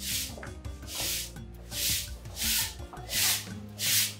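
Background music: a shaker or rattle in a steady pattern, one swishing stroke about every three-quarters of a second, over low held notes.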